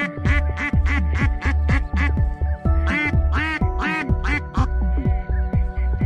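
A rapid series of duck quacks, about three a second, that stops a little after four and a half seconds in, over background music with a steady beat.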